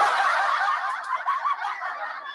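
Thin-sounding laughter that fades away over about two seconds.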